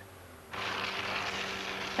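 Suzuki GSX1300R Hayabusa motorcycle running, heard as a steady rushing noise with a faint underlying hum that starts abruptly about half a second in.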